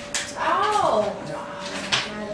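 A person's voice: one short exclamation that rises and falls in pitch, about half a second in, with a few sharp clicks around it.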